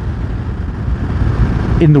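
A BMW R1200GS motorcycle ridden at road speed: a steady low rumble of engine and wind noise on a helmet-mounted microphone. A man's voice starts near the end.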